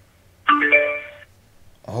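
XY-P15W Bluetooth amplifier board's power-on chime played through its two speakers: a short electronic chime of several stacked tones, lasting under a second and starting about half a second in. It is the sign that the board has powered up.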